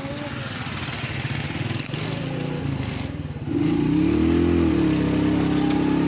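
Motorcycle rickshaw engine running close by, growing louder about three and a half seconds in, with a brief rise and fall in pitch before it settles into a steady hum.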